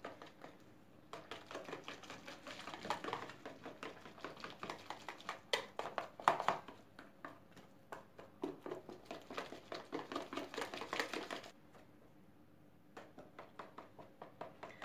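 Wire whisk beating crepe batter in a plastic bowl: a fast run of clicks and taps as the whisk strikes the bowl, stopping briefly near the end and then starting again.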